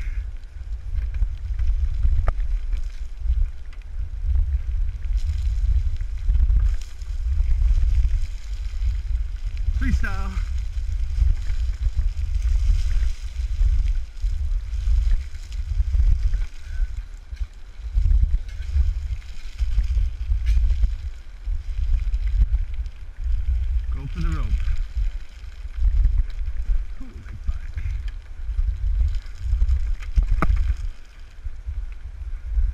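Wind and handling rumble buffeting a GoPro Hero3's microphone as it is carried quickly down a forest trail, a deep, gusty rumble that swells and drops unevenly.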